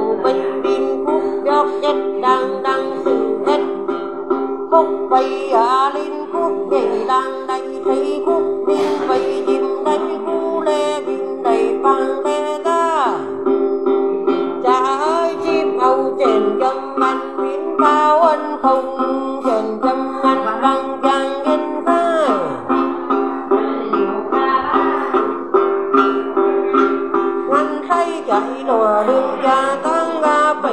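Tày then singing: a woman's voice chanting with sliding, ornamented pitch over a đàn tính, a long-necked gourd lute, plucked in quick, continuous strokes.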